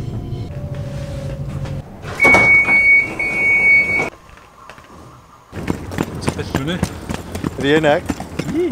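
A commuter train runs with a low, steady rumble. Then a loud, steady high beep sounds for about two seconds with a short break in the middle; this is the train's door signal. After a brief lull come voices and clatter.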